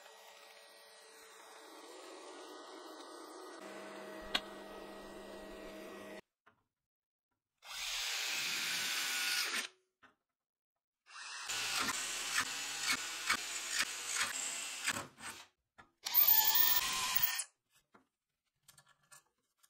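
TIG welding arc hissing steadily for about six seconds, then an electric drill boring holes through metal sheet in three bursts, the last the loudest.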